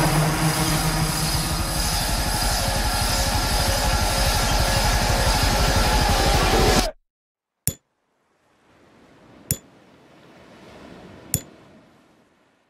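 Film trailer soundtrack: a loud, dense swell of score and sound effects with sustained low tones cuts off abruptly about seven seconds in. Three sharp hits follow, about two seconds apart, over a faint swelling hum.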